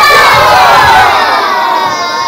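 A group of young children shouting together in one long, loud cry of many overlapping voices, gently falling in pitch and tailing off near the end.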